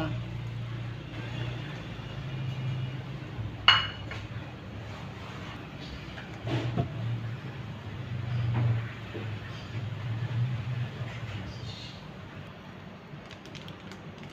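Chopped vegetables tipped from a plate into a pot of simmering lentils, with a sharp clink on the pot about four seconds in, then a wooden spoon stirring the pot with a few soft knocks, over a steady low hum.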